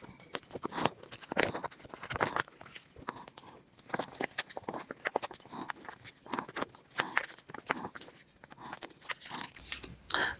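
Two stacked sheets of paper being folded back and forth into an accordion fan: a long run of irregular, crisp crackles as each fold is creased and pressed down.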